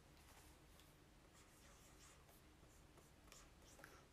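Near silence: room tone, with a few faint ticks near the end.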